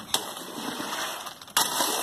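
Wet concrete, coarse with fine gravel, being worked in a footing hole: a rough stirring noise, with a sharp knock just after the start and a sudden louder stretch near the end.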